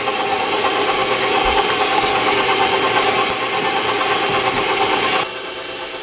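KitchenAid stand mixer running, its beater mixing softened butter and cream cheese in the steel bowl: a steady motor hum with some rattle, dropping to a quieter level about five seconds in.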